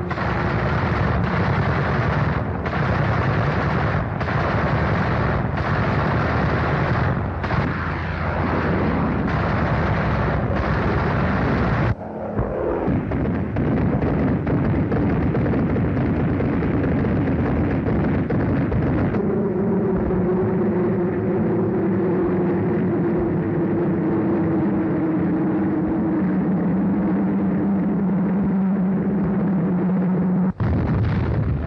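Battle sound effects of an air strike on ships on an old film soundtrack: aircraft engines with gunfire and explosions, changing abruptly several times in the first twelve seconds. From about two-thirds of the way in, a steady engine drone sinking slightly in pitch dominates.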